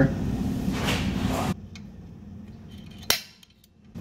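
A single sharp snap of a spring-loaded automatic center punch, about three seconds in, dimpling the marked center point on steel ready for drilling. Before it, a steady low workshop hum drops away about a second and a half in.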